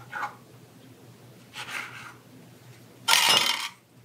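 Bench scraper cutting through bread dough on the countertop: quiet handling at first, then one loud scrape lasting about half a second near the end.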